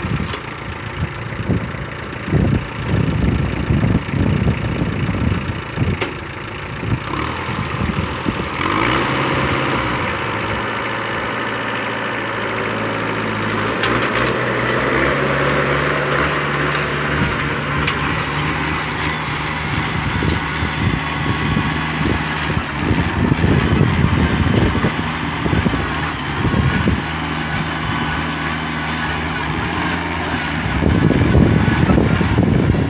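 Compact tractor's diesel engine running steadily while pulling a tine cultivator through dry soil. The engine note rises partway through.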